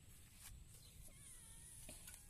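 Near silence with one faint, short, wavering animal cry about a second in, and a few light clicks.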